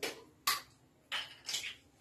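Hand-handling noise from a small plastic flavouring bottle and a tissue: four short rustles and scrapes, the second a sharper click.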